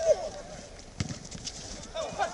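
Brief shouts of footballers on the pitch, with a single sharp thud of a football being struck about a second in.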